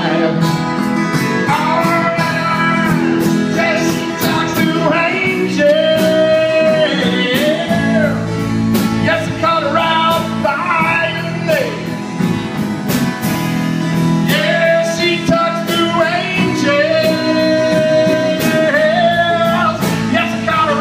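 Live amateur rock band playing: a man singing into a microphone over electric guitar and a steady drum beat.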